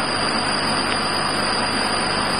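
Philicam 1325 CO2 laser cutting machine running as it cuts acrylic: a steady, even rushing noise with no distinct tones or strokes.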